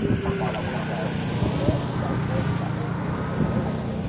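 A vehicle engine running with a steady low hum while people talk over it.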